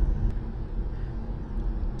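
Steady low rumble of a car on the move: road and engine noise picked up inside the car.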